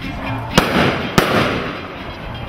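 Two sharp bangs of procession firecrackers, about half a second in and again just over a second in, each trailing off in a hiss. Jaranas are strummed faintly underneath.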